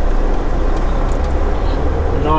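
Semi truck's diesel engine running at low speed, a steady low rumble heard from inside the cab.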